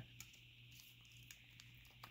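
Near silence: room tone with a steady faint hiss and low hum, and a few very faint ticks.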